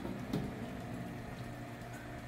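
Steady, fairly quiet trickle of liquid running from the return pipe down the wall of a stainless brew kettle into freshly mashed-in grain, over a faint low hum.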